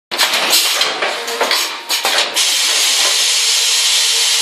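Shin Heung SHPF-400 automatic punching and wire-forming binding machine running: an irregular clatter of metal knocks from its mechanism for about two seconds, then a steady hiss from about two and a half seconds in.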